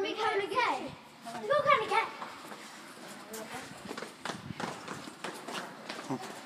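People talking briefly in the first two seconds, then scattered footsteps.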